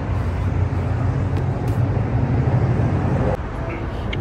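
Steady low outdoor rumble with an even hiss, which drops suddenly a little over three seconds in.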